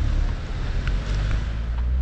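Low, steady rumble of wind buffeting a handheld GoPro's microphone as it is carried along a street, with a few faint ticks of handling over the traffic noise.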